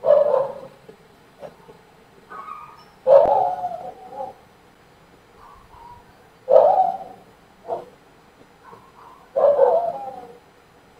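An animal calling in the background: four loud calls roughly three seconds apart, with softer calls between them.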